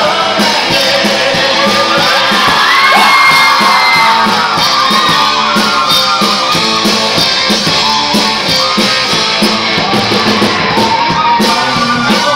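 Live rock band playing loud: a man and a woman singing into microphones over electric guitar and a drum kit with a steady beat, one long high note held around the third second.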